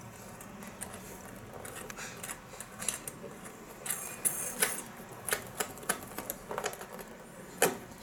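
Irregular light clicks and taps of hands handling wires and plastic connectors in a scooter's wiring, with a sharper click near the end.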